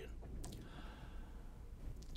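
A man's soft breath with a faint mouth click about half a second in, over a low steady room hum.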